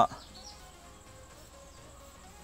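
Marker pen squeaking faintly on a whiteboard as a line is drawn, in short wavering squeaks. A loud steady held tone cuts off abruptly right at the start.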